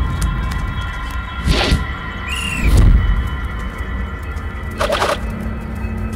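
Film background score under a montage: sustained high notes over a low rumbling bass, with three short rushing swells about a second apart and a brief high tone that rises and falls about two and a half seconds in.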